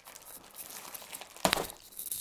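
Plastic mailer bag crinkling as it is handled while its red tear strip is pulled, with a single sharp snap about one and a half seconds in as the strip comes free.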